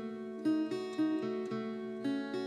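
Instrumental acoustic guitar music: picked notes struck a few times a second and left ringing into one another, with no singing.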